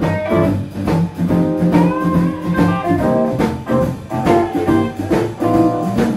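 Live band of electric guitars, bass guitar and drum kit playing, with a note bent upward about two seconds in.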